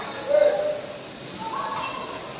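Two short shouted calls in a large hall, the first a brief falling "hoo" and the louder of the two, the second higher near the end. A single sharp click of a sepak takraw ball being kicked comes about three quarters of the way in.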